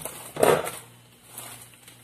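A plastic packet of table salt being picked up and handled, with one short crunchy rustle about half a second in.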